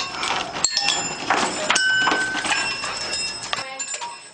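Rube Goldberg machine parts clattering: a quick run of knocks and clicks, with several short metallic rings mixed in.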